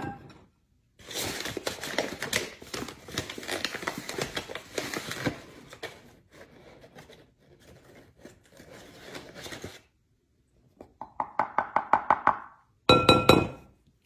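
A wooden spoon scooping flour from a paper flour bag into a metal measuring cup, with paper crinkling and quick scraping and knocking, then a run of quick even scrapes as the cup is levelled off. Near the end comes a short ringing clink from the metal cup.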